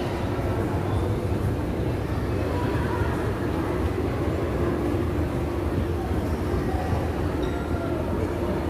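Mall escalator running with a steady low rumble, heard while riding it, with faint voices in the background.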